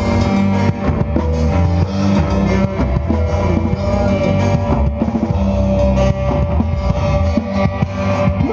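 A live rock band playing loud, with no singing: a drum kit beating steadily under electric guitars.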